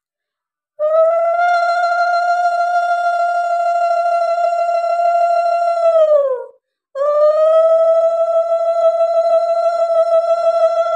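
Conch shell (shankha) blown in two long, steady blasts during a Lakshmi puja aarti. The first blast drops in pitch as the breath runs out about six seconds in, and the second begins a moment later.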